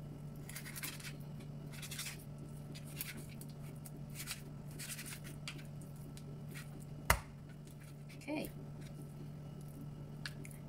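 Kitchen knife filleting a whole fish on a cutting board: a series of short scraping strokes as the blade slices along the backbone, with one sharp knock about seven seconds in. A steady low hum runs underneath.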